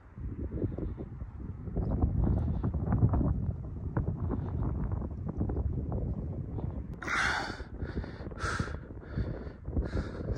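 Wind buffeting the microphone with a low rumble over a hiker's irregular footsteps crunching on snow and rock, with a couple of short hissing bursts near the end.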